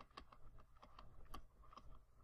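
Faint, irregular clicks and taps of a stylus writing a word on a pen tablet.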